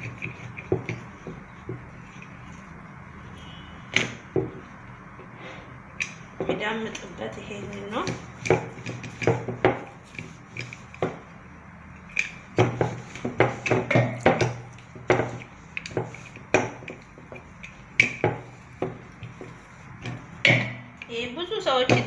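Wooden rolling pin rolling dough thin on a hard board, with irregular clicks and knocks as the pin and hands tap against the board, busiest in the second half.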